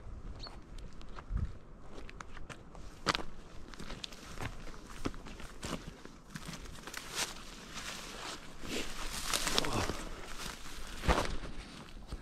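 Irregular footsteps on a dirt track, with scuffs and clicks, and a longer stretch of rustling about nine to ten seconds in.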